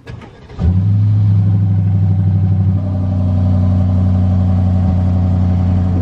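Aston Martin DBX's twin-turbo V8 started with the dashboard push-button, heard inside the cabin: a click, then the engine fires suddenly about half a second in and runs at a steady idle, settling slightly lower a couple of seconds later.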